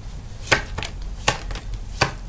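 A deck of Kipper fortune-telling cards being shuffled and handled: several short sharp card slaps, the loudest about half a second in and again a little past one second.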